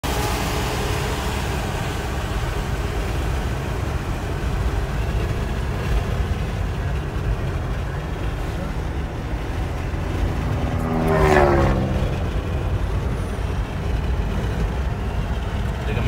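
Steady road and engine rumble inside a moving car's cabin. About eleven seconds in, a louder pitched sound slides down in pitch over about a second.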